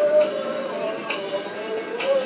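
Tinny recorded song from a battery-operated animated Christmas figure: a long held sung note over a faint beat of about one tick a second.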